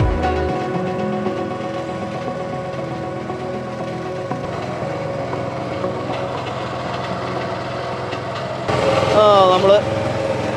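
Small motorboat's engine running steadily as the boat moves along. A person's voice comes in near the end.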